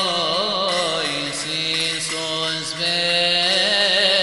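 Closing music of chant: a voice singing a long, wavering melody over steady held notes, with the note changing about a second in and again near the end.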